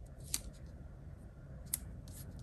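Fingers pressing a paper sticker down onto a planner page: two faint sharp ticks about a second and a half apart over a low steady room hum.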